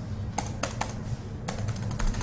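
Typing on a laptop keyboard: irregular keystroke clicks, a few spaced taps at first and a quicker run near the end, over a low steady room hum.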